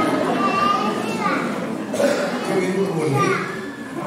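A man speaking into a microphone in a large hall, with children's voices in the background.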